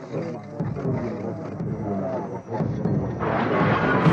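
Women wailing and crying aloud in grief, voices rising and falling without words. A louder, noisier sound swells up about three seconds in.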